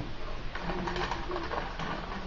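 Greyhound making low-pitched moaning vocalizations while begging for food: one about a second long, then a shorter one near the end.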